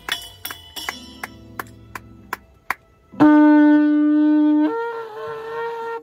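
A small brass cymbal tapped several times in quick, light chinks, then a long spiral kudu-horn shofar blown: one steady low note for about a second and a half, jumping to a higher note for just over a second before it stops.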